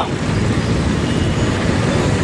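Steady low rumbling noise of passing road traffic, with no speech over it.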